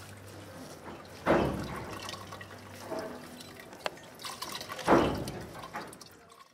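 Wet wool yarn being dunked and squeezed in a clay pot of dye liquid: sloshing and dripping, with a louder surge of liquid about a second in and again near the end, and a single sharp click just before the fourth second.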